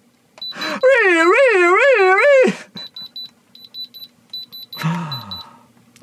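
Handheld electronic diamond tester beeping in short, high-pitched, repeated bursts as its probe touches his diamond grills, the beep being the tester's signal that a stone reads as diamond. Over the first half a man's loud wavering wail, its pitch rising and falling about three times a second, and near the end a short falling groan.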